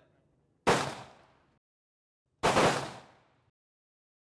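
Two single rifle shots on a firing range, about two seconds apart, each ringing out for close to a second.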